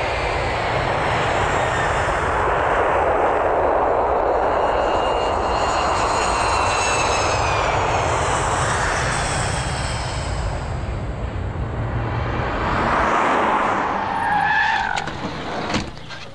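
Jet airliner taking off: a steady engine roar, with high turbine whines that glide down in pitch midway. The roar fades away near the end.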